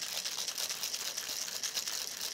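Ice rattling steadily inside a metal cocktail mixing tin as it is shaken hard, chilling and diluting a gin-and-vermouth cocktail.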